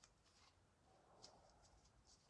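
Near silence, with a few faint, small clicks and taps from hands working small craft pieces.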